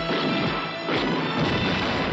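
Action-film trailer music with sudden crashes at the start and about a second in: the sound effect of a helicopter blowing up.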